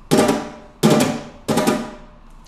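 Nylon-string flamenco guitar strummed hard with the right hand: three loud rasgueado strums about 0.7 seconds apart, each ringing and dying away before the next.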